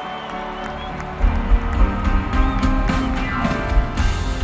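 Live rock band playing a piano solo. The piano plays alone at first, then drums and bass come in about a second in. A fast falling piano run comes near the end.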